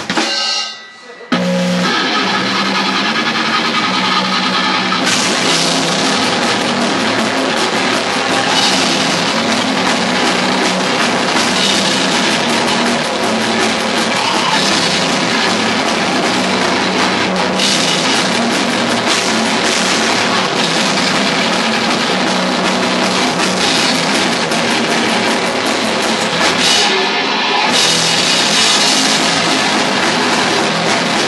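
Live death metal band playing a song at full volume: electric guitars and a drum kit come in together about a second in and keep going as one dense wall of sound, with a short break in the low end near the end.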